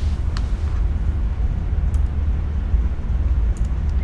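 Steady low hum and rumble of the recording's background noise, with a faint click about a third of a second in and another about two seconds in.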